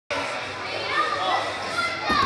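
Children's voices calling out and chattering over a steady background din in a gymnastics gym, with high-pitched rising and falling calls.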